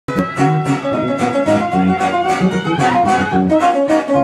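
Live band music: quick guitar runs over a steady drum beat.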